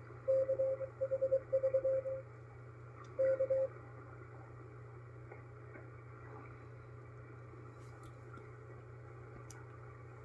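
Morse code from the KPH San Francisco coast station received on a shortwave SDR in upper sideband: a mid-pitched tone keyed in dots and dashes for about two seconds, then one more short group near four seconds in, closing the marker message with "K" (go ahead). After that only steady receiver hiss with a low hum.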